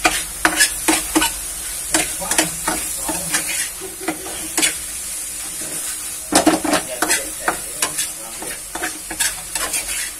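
Shrimp and pork sizzling in a frying pan while a spatula stirs and turns them, with irregular clacks and scrapes of the spatula against the pan, loudest about six and a half seconds in.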